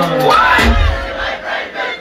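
A man shouting into a microphone through a PA at a live concert, his voice rising in pitch about half a second in, over a crowd, with a bass thump from the music under the shout.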